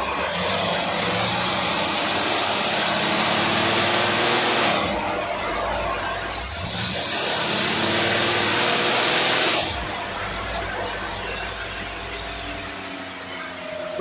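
Engine with a newly done Holley two-barrel carburetor being tested under dyno load and run up twice. Each time the sound builds for about four seconds with a hiss on top, then drops back to a lower idle.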